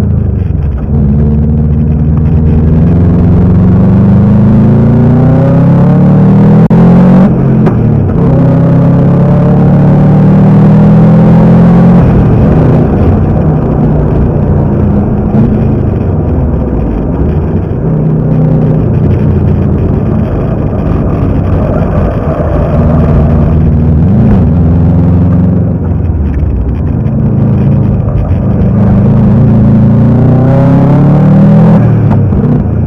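Subaru GC8 Impreza's turbocharged EJ20 flat-four engine, heard from inside the cabin, running hard on a race lap. The revs climb and drop again and again as it pulls through the gears and slows for corners.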